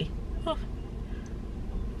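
A steady low rumble inside a stationary car's cabin, with one short spoken "oh" about half a second in.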